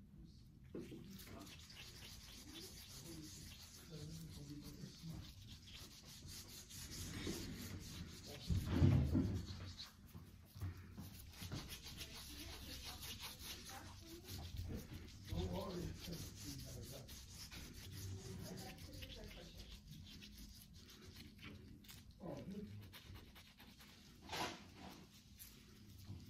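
Gloved hands wiping and rubbing exfoliating scrub off bare feet with cotton pads, a soft continuous scratchy rubbing. There is a louder low bump about nine seconds in and a brief sharp sound near the end.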